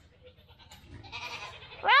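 A goat bleating: near the end, a loud call sweeps up in pitch. It repeats a call heard a moment earlier, and before it there are only faint low sounds.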